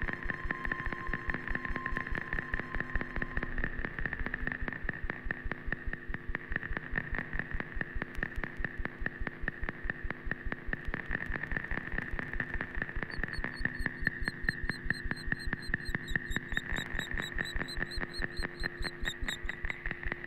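No-input mixing desk feedback: a steady high tone over low drones, chopped into a fast pulsing buzz. From about thirteen seconds in, wavering high chirps join.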